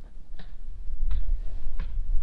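Handling noise as a just-caught spotted bass and the fishing line are worked by hand: three light clicks about two-thirds of a second apart, over a low rumble of breeze on the microphone that grows louder in the second half.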